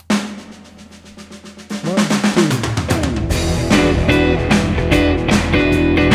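Shuffle blues drum backing starting, joined about two seconds in by an electric guitar playing a fast shuffle rhythm figure of E9, A13 and B13 chords on the neck pickup. The sound gets fuller and louder about three seconds in.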